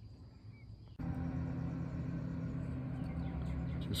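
A steady low hum that starts abruptly about a second in, after a near-silent first second.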